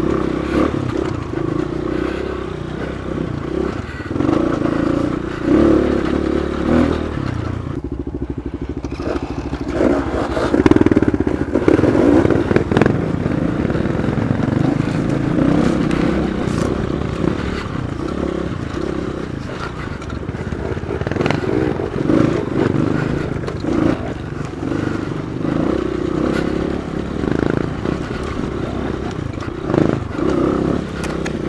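Dirt bike engine running under load on a rough trail, the throttle opening and closing every second or two, with knocks and rattles from the bike over rocks and roots.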